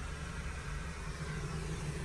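Steady low hum with a faint hiss of air: the background noise inside a parked car's cabin.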